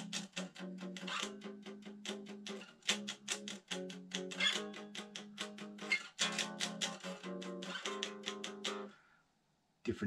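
Eight-string electric guitar playing a cadence as an interval example: a quick run of picked notes over a held low note, with the upper notes changing. The playing stops about a second before the end.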